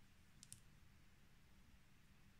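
Near silence: room tone, with two faint quick clicks close together about half a second in from hand crocheting with a metal crochet hook.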